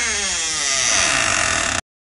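Sound effect of a door creaking open: one long creak that falls in pitch and cuts off abruptly near the end.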